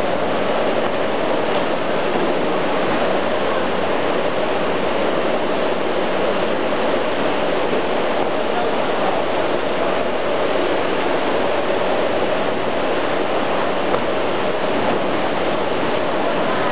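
Steady, loud drone of factory machinery running without a break, with a constant midrange hum.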